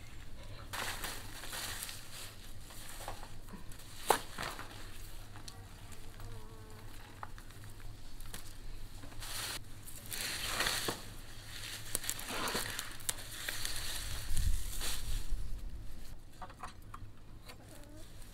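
Fresh radish greens rustling and crackling as they are sorted and pulled apart by hand, in irregular bursts.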